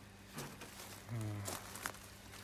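Faint rustling and a few light clicks from hands handling plant cuttings, with a short low voice sound lasting about half a second, a little past the middle.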